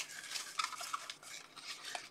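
Faint handling noise: a few light clicks and soft rustling from small objects being moved about on a desk.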